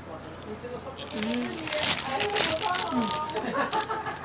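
Indistinct talking, with short crinkling of the paper wrapper around the burger about two seconds in.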